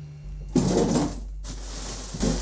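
An upright freezer being opened and rummaged in: a rattling scrape of about a second, as of a frosty drawer or frozen bags being shifted. A low steady hum sets in just after the start.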